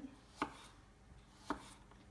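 Kitchen knife slicing through fingerling potatoes and knocking on a wooden cutting board: two cuts about a second apart.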